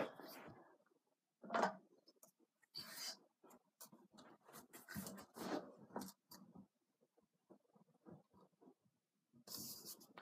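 Faint, scattered clicks, taps and scrapes of metal stunt-scooter parts being handled and fitted together as the handlebar is slid onto the fork, with a brief louder rustle near the end.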